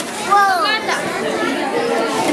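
Children's voices chattering in a large, echoing room. About half a second in, one high child's voice slides down in pitch in a short call.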